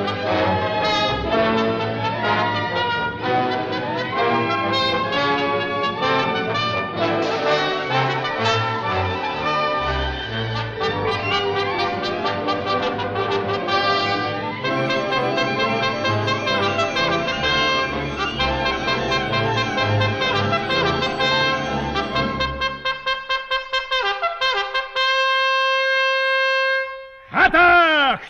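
Operetta orchestra playing a brass-led passage with trumpets and trombones prominent. About 23 seconds in, the full orchestra drops away to quick repeated notes and then a single held high note.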